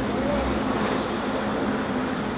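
Steady outdoor noise of city street traffic mixed with BMX tyres rolling on asphalt, with one short high pitched sound about a quarter second in.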